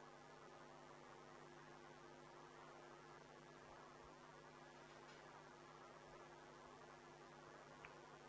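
Near silence: room tone with a faint steady electrical hum and hiss.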